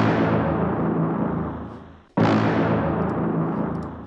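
A brass one-shot sample played twice from a software sampler: two pitched stabs, each with a sudden attack and a fade over about two seconds, the second starting about two seconds in.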